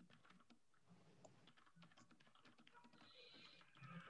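Near silence with faint, irregular computer keyboard typing clicks.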